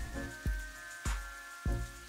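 Marinated chicken pieces quietly sizzling in hot oil in a heavy pan, the water they release cooking off, with soft background music holding steady notes.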